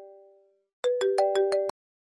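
Mobile phone ringtone: a short electronic tune of quick plucked notes that fades out, starts again a little under a second in, and cuts off suddenly when the incoming call is answered.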